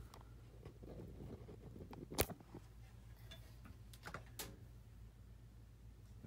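Handling noise as a phone is unplugged and carried: light rustles and small clicks over a low steady hum, with one sharp click about two seconds in and another a little after four seconds.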